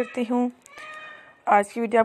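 A woman speaking Urdu, with a pause in the middle that holds a faint, short high-pitched sound about a second long before her voice resumes.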